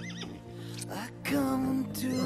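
A foal whinnying, a brief high wavering call near the start, over the instrumental backing of a song.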